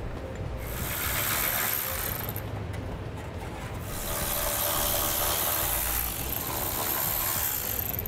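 Cordless electric ratchet whirring in two long runs as it backs out 14 mm bolts under a car: one from about half a second in to just past two seconds, and a longer one from about four seconds in to the end.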